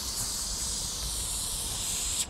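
Aerosol spray-paint can spraying in one steady hiss.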